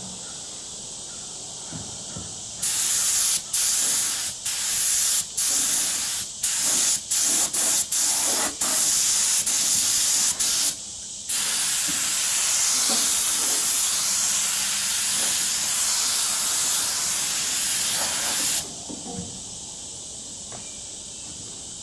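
Compressed-air spray gun spraying onto a steel trailer frame. The hiss starts and stops in a dozen or so short trigger bursts, then is held steadily for about seven seconds before it cuts off.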